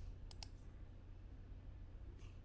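A computer mouse button clicked once, press and release in quick succession, about a third of a second in, over a faint low hum.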